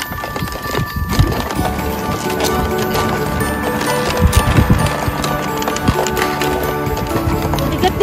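Background music with sustained notes, over a rhythmic knocking and rattling from a wooden dog sled and its dog team running on a packed snow trail.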